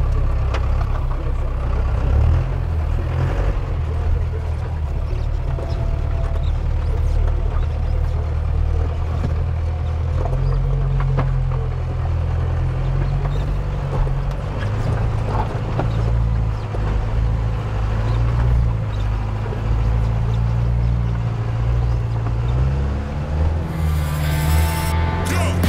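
Diesel engine of a Jeep Wrangler truck build running under load at low revs while crawling over rocks, its pitch stepping up and down, with occasional knocks.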